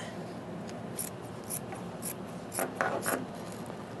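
Short scratchy strokes on denim fabric, about one every half second, as the fabric is worked by hand.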